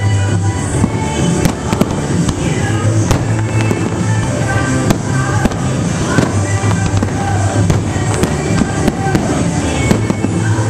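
Aerial fireworks shells bursting and crackling, many sharp bangs in quick, uneven succession, over loud music with a steady bass.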